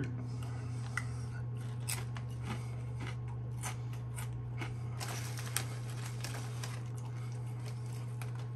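Ridged potato chips being chewed in the mouth, with scattered sharp crackles from the chips and the foil chip bag, over a steady low hum.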